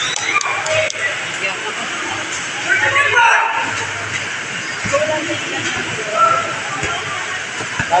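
Basketball spectators chattering and calling out over a steady background hiss, with a laugh at the start and scattered distant voices.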